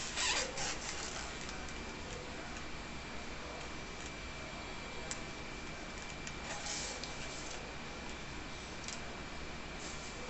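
Hands handling a modelling-clay doll, fitting and pressing its hat on: a short burst of rustling just at the start, then softer rustles and a couple of small clicks. A steady hiss with a faint high steady tone runs underneath.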